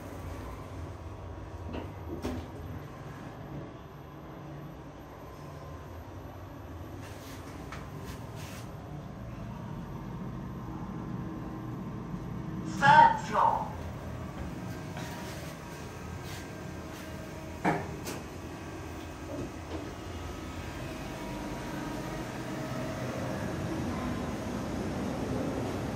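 Kone scenic elevator car travelling up its shaft after the door has closed: a steady low ride hum, growing slightly louder near the end. A short loud sound with two peaks comes about halfway through, and a single knock follows a few seconds later.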